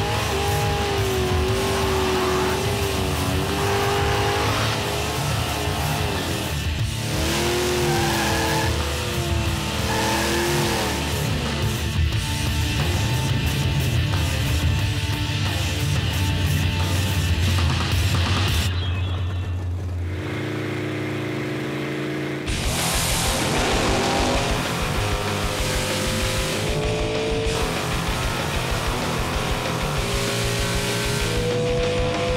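Drag-racing V8 engines, from a nitrous LS-swapped Mustang and a small-block Ford Thunderbird, running and revving with some tyre noise, under heavy rock music. The engine drone turns steadier and duller for a few seconds about two-thirds of the way through.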